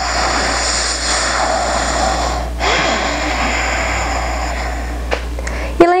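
Deep, audible breathing through the nose with a soft throat-constricted hiss (ujjayi breath), close to the microphone: two long breaths with a short pause about two and a half seconds in.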